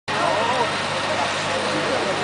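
Several people's voices talking over a steady noise from fire engines idling in the street.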